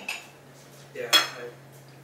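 Forks clinking against plates during a meal, with one sharp, ringing clink about a second in. A steady low hum runs underneath.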